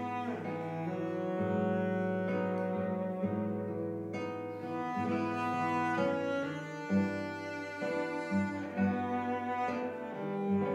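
Cello and classical guitar playing an instrumental duet. The bowed cello carries long sustained melody notes over the guitar's plucked accompaniment, with a few sharper accented notes in the last few seconds.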